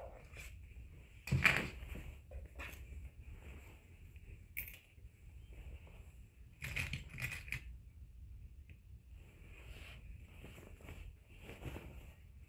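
Patchwork fabric bag with stiff interfacing rustling and crinkling as it is handled and turned, in short irregular bursts, the loudest about a second and a half in and again around seven seconds in.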